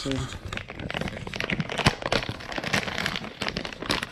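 Clear plastic parts bag crinkling and crackling as it is handled and opened, in a quick irregular run of sharp rustles.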